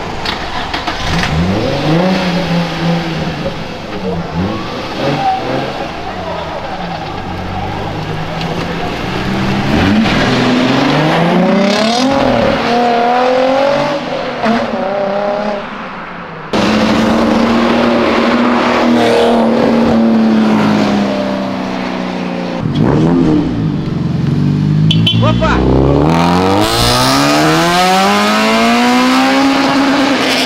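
Performance car engines revving and accelerating hard, beginning with a Nissan 350Z's V6: the engine note climbs in repeated sweeps as it pulls away through the gears. After a sudden change about halfway, another engine holds a steady note, then revs up again near the end.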